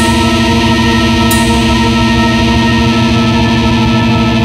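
Metal music: a distorted electric guitar with chorus and echo effects sustaining one held chord, with a single crash about a second in.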